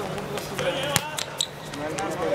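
A football is struck on a hard outdoor court, giving one sharp thud about a second in. Voices call out around it.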